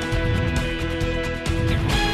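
News programme theme music with sustained chords over a steady beat, and a sweeping whoosh near the end as the title graphics transition.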